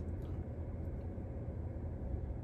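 Steady low rumble of background noise inside a car's cabin, with no distinct events.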